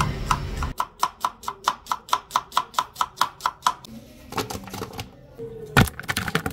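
Kitchen knife slicing an onion on a wooden cutting board: quick, even chops at about six a second for some three seconds, then a few slower strokes, and a single louder knock near the end.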